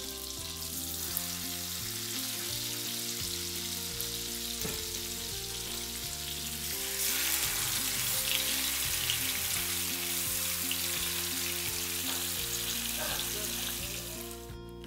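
Butter and oil sizzling in a non-stick frying pan, the sizzle getting louder about seven seconds in, once marinated tandoori chicken pieces are in the pan to fry. Background music plays underneath.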